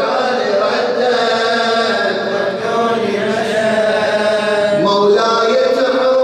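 A man chanting Arabic devotional verse solo into a microphone. He draws out long held notes, with a sharp rise in pitch near the end.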